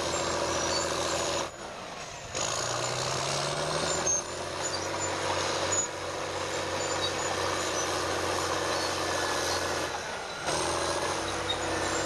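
Crawler bulldozer's diesel engine running steadily under load as the blade pushes dirt, its note rising for a second or two about three seconds in. The sound drops briefly twice, about one and a half seconds in and near the end.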